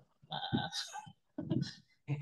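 A person's voice over a video call: two short vocal sounds, fainter than the talk around them.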